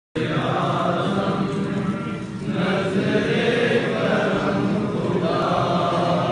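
Several voices chanting together in a devotional recitation, steady and continuous with a short dip a couple of seconds in.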